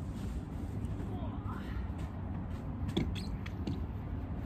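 Faint vocalizing from a young child over a steady low rumble, with a sharp click about three seconds in.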